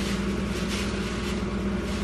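A steady low hum with one constant low tone.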